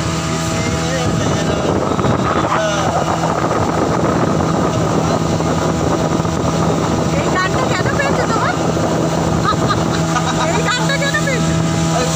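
Motorboat engine running steadily under way, a constant hum with the rush of the moving boat over it.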